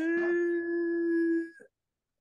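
A woman's voice holding one long, steady note in Qur'an recitation, a prolonged vowel sustained for about a second and a half before it stops.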